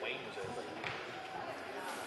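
A basketball bouncing on a gym's wooden floor, two bounces about half a second apart, under faint background talk.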